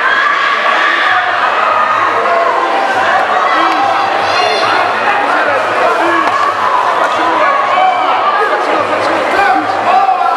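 Crowd of fight spectators shouting and cheering, many voices overlapping.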